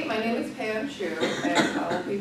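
Speech: a person talking in a room, with words too unclear to make out.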